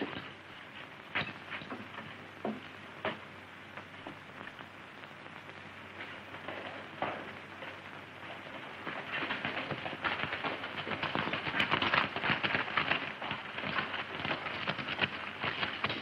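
A few scattered light knocks, then from about nine seconds in a dense, rapid clatter of horse hooves on hard ground that grows louder.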